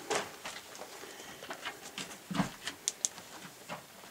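Footsteps crunching and scuffing on loose, slippery rubble while walking down a sloping mine passage: irregular steps, with one heavier step about halfway through and a couple of sharp clicks of small stones just after.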